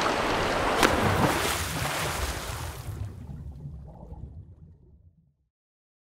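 Steady rush of sea and wind on a moving boat at sea, with one sharp click about a second in. It fades out over a couple of seconds to silence.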